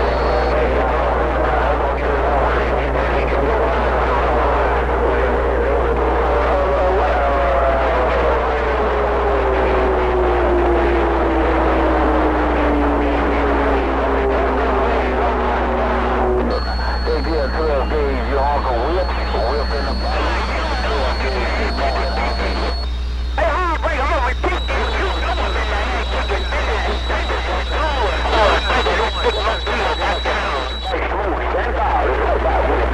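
CB radio receiver audio: faint, unintelligible voices buried in loud static, with a whistle sliding down in pitch from about seven seconds in to about sixteen. The signal changes abruptly twice, near the middle and again a few seconds later, as stations key up and drop out.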